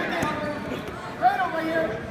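Voices calling out, with a single thud about a quarter second in.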